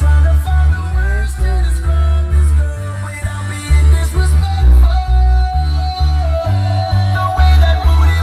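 Loud music with singing and a heavy, pulsing bass line, played through the car's audio system.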